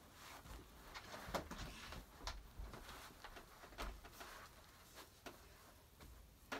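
Faint rustling and scattered soft knocks of a child squirming across a carpeted floor and getting up onto her feet.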